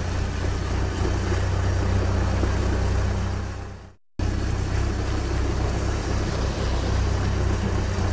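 Truck engine running, a steady low rumble. It fades out about halfway through, stops for a moment of silence, then starts again.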